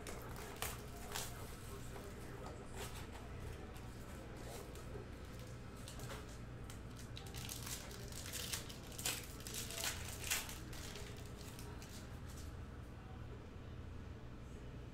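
A foil trading-card pack being torn open and crinkled by hand, with cardboard card boxes handled: scattered sharp crackles and rustles, busiest from about seven to ten seconds in. A steady low hum runs underneath.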